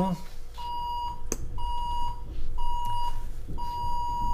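An electronic beeper sounding a steady single-pitched beep about once a second, each beep about half a second long, with the last one held longer. A single sharp click comes about a second in.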